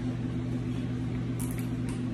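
Steady low background hum with faint room noise, and a brief faint crackle about one and a half seconds in.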